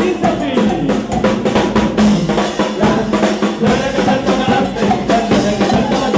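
A charanga band playing live, with drums beating a steady, driving rhythm under sustained wind or brass lines.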